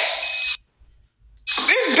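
A woman's voice and noise stop abruptly about half a second in, leaving about a second of near silence. Then her speech starts again near the end.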